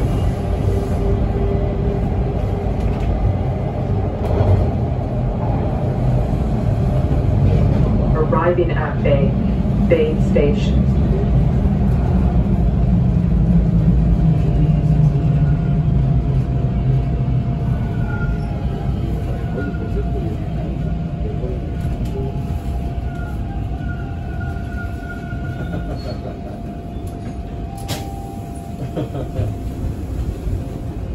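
Bombardier T1 subway car running with a heavy rumble of wheels on rail, which eases off over the second half as the train brakes into a station, with a thin steady whine as it draws to a stop.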